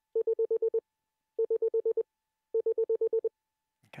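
Morse code dots sounded as a sidetone beep, keyed by the self-vibrating dot pendulum of a Begali Intrepid semi-automatic bug. There are three quick strings of about seven dots each, roughly ten dots a second, with short gaps between the strings.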